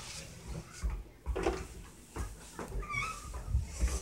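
Low bumps and footfalls from a hand-held phone being carried while walking, with one short high squeak about three seconds in.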